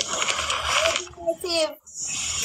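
Indistinct speech: short voice fragments with a hissy, breathy sound in the first second.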